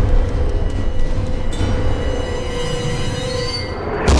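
Tense film soundtrack: a sustained, shrill screeching tone over a low rumble, with more high tones joining about one and a half seconds in.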